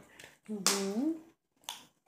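A person's voice making a short utterance that rises in pitch at the end, with a sharp click just as it starts and a smaller click near the end.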